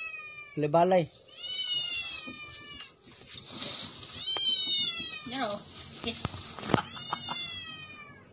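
A small young animal crying: three long, high-pitched cries that slide down in pitch, with a brief low human voice about a second in and a sharp tap shortly before the end.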